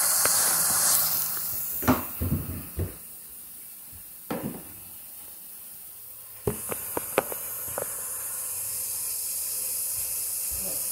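Running water hissing steadily. It drops away about two seconds in and comes back suddenly about six and a half seconds in, with scattered knocks and clicks from handling.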